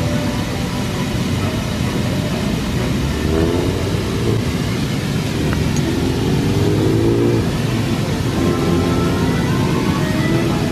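Steady rush of fountain jets and falling water, with traffic going past. Engines rise in pitch three times, at about three, six and eight and a half seconds in.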